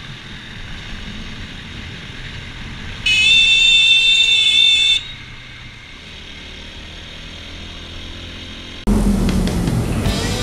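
Motorcycle running on the road with steady engine and wind noise. About three seconds in, a horn sounds one steady blast for about two seconds. Near the end the sound cuts suddenly to louder audio.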